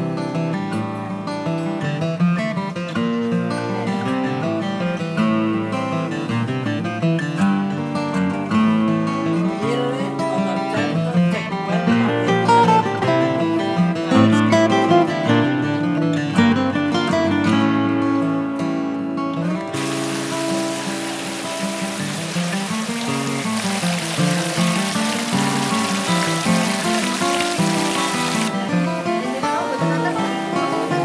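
Background music played on plucked strings, guitar-like. About two-thirds of the way in, a steady hiss joins the music and cuts off shortly before the end.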